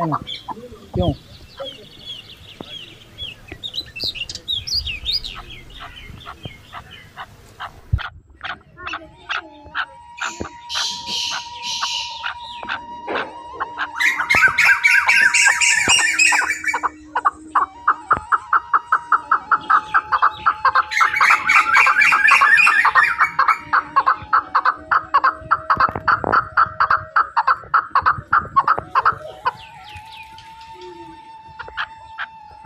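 Birds chirping and calling. Long runs of rapid repeated notes grow louder about halfway through.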